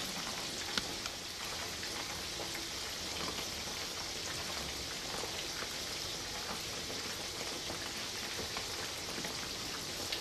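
Chicken wings frying in a pan of hot oil: a steady sizzle with a few faint pops.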